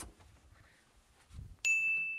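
A single bright ding sound effect, one short high chime of about half a second, marking an item being ticked off a checklist. A soft low thump comes just before it.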